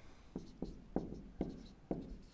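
Marker pen writing on a whiteboard: about five short, separate strokes.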